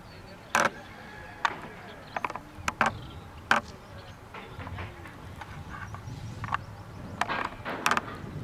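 About ten sharp clicks and knocks, irregularly spaced, bunched in the first half and again near the end, over a low outdoor background with faint distant voices.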